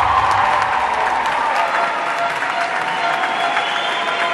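Audience applauding and cheering at the end of a group gymnastics routine, as the low music fades out in the first half second.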